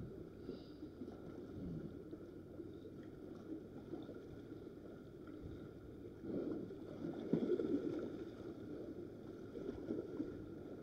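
Faint low wash of sea water lapping, swelling for a couple of seconds about six seconds in.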